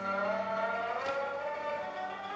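Shudraga, the Mongolian fretless three-stringed lute, sliding its pitch upward in a glissando and then holding the note, over piano accompaniment.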